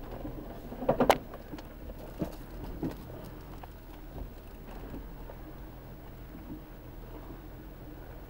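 Volkswagen Touareg engine running steadily at low revs off-road. A loud crunching knock comes about a second in, and a few smaller knocks follow over the next two seconds.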